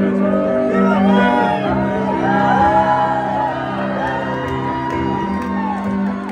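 A live rock band holds a steady droning chord while audience members whoop and shout over it, several voices gliding up and down in pitch.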